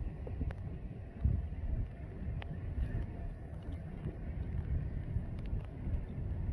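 Wind buffeting a phone's microphone: a steady low rumble with a few faint clicks.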